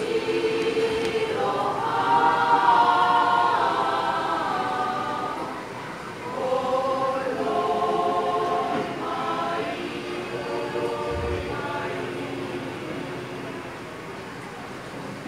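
A choir singing a hymn in long, held phrases of several voices together, growing quieter near the end.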